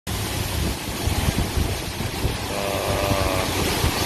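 Rice-processing machinery running in a grain shed, a grain sorter feeding an automatic bagging scale: a steady, dense hiss with an uneven low rumble underneath.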